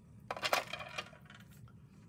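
A short clatter of a few small hard knocks about half a second in, from a plastic glue bottle being set down on the craft table.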